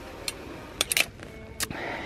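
A few light, sharp clicks and rattles, about four across two seconds, like clothes hangers knocking on a metal store rack while garments are handled.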